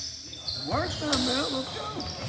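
A basketball being dribbled on a hardwood gym floor, with sneakers squeaking and short pitched squeals about a second in, in a reverberant gym.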